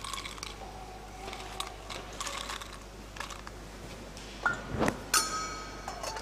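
Metal altar vessels and glass cruets being handled, with small scattered clinks and taps while the chalice is cleaned after communion. About five seconds in there is a louder knock, then a sharp metallic clink that rings briefly.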